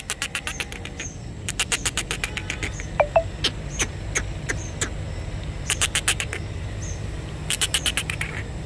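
An animal's rapid clicking calls in four short bursts, about a dozen high clicks a second, over a steady low rumble.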